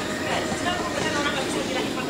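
Indistinct voices in the background, quieter than the talk around them, with no clear words in front.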